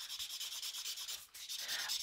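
Writing on paper: quick scratchy strokes, with a brief pause a little past halfway.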